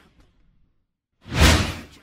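Whoosh transition sound effect: one swoosh fades out at the start, then after about a second of silence a second whoosh swells up and dies away.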